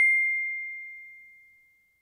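A notification-bell chime sound effect: a single high, pure ding that was struck just before and keeps ringing, fading away smoothly over about a second and a half.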